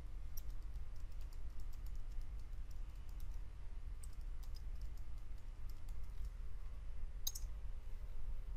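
Computer keyboard keys clicking in quick, uneven runs as a name is typed, with one sharper click near the end, over a steady low hum.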